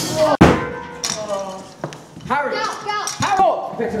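A loud noisy burst and a sharp knock in the first half second, then several voices crying out in alarm, their pitch rising and falling.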